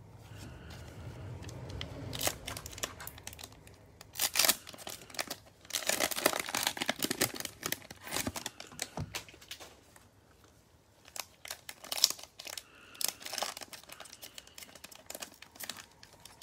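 Plastic cellophane wrapper of a trading-card cello pack crinkling and tearing as gloved hands rip it open, in several bursts of sharp crackling with short pauses between.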